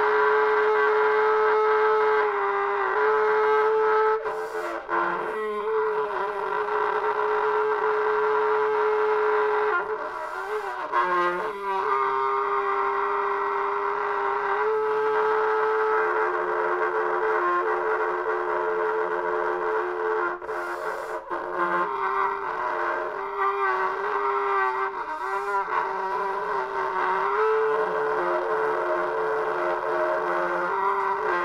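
Unaccompanied trumpet playing long held notes that move in small steps between nearby pitches, with a few short breaks between phrases.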